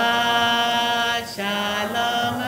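Slow sung melody held in long steady notes, with a brief break a little past halfway before the next note.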